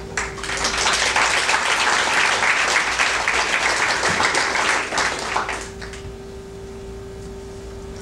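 Audience applauding in a hall, many hands clapping. It dies away about six seconds in, leaving a steady electrical hum.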